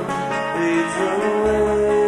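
Rock band playing live, a slow passage with long held notes; a low bass note comes in about halfway through.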